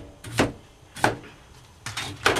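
A crinkle cutter slicing through a cucumber onto a cutting board: three short chopping knocks, a little over half a second apart.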